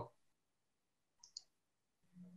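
Near silence broken by two faint clicks in quick succession a little over a second in, like computer mouse clicks.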